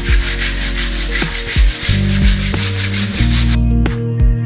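Hand sanding of a plastered wall with a small sanding pad: quick, rhythmic back-and-forth scratchy strokes that stop shortly before the end. Background music plays underneath.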